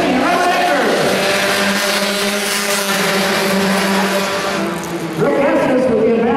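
A pack of compact four-cylinder race cars running together on a paved oval. Several engines rev up and down through the turn, settle into a steadier drone mid-pack along the straight, then rise and fall in pitch again near the end.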